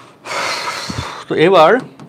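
A man's loud breath of about a second, followed by a short voiced "hmm" that wavers in pitch.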